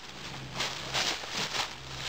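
Dry fallen leaves rustling and crunching underfoot, in a few soft bursts.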